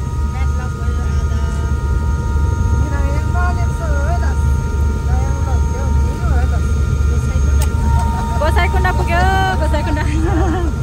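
Helicopter's turbine engine and rotor running, heard from inside the cabin: a steady deep drone with a thin, constant high whine over it. Voices talk over the noise at times, most clearly near the end.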